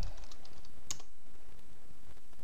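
Typing on a computer keyboard: a few light keystrokes, then one sharper, louder key press just under a second in.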